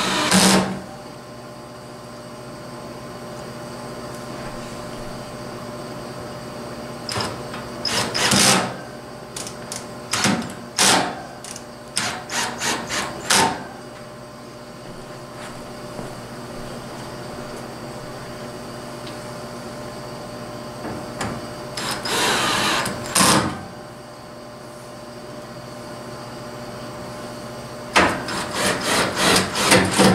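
Cordless drill-driver driving screws into the sides of an air conditioner's metal cabinet in several short bursts with pauses between screws, some bursts broken into rapid clicks. A steady hum runs underneath.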